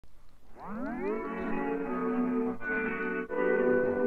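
Background music: a sound that rises in pitch for about half a second, then settles into sustained chords that change twice.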